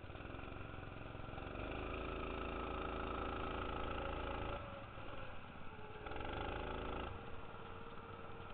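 Go-kart engine accelerating, its pitch rising and then held at high revs, until the throttle comes off about four and a half seconds in; it revs up again about six seconds in and lifts off a second later.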